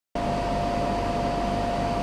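Portable air conditioner running during its first test: a steady rush of air with one constant tone and a low hum, cutting in abruptly just after the start.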